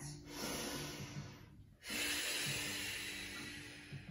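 A woman breathing audibly, one long breath in, a brief pause, then a longer breath out that fades away. Soft background music plays underneath.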